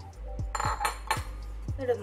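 A spatula clinking against a nonstick pan of rice flour and hot water, several sharp clinks in the first half, over background music with a steady beat.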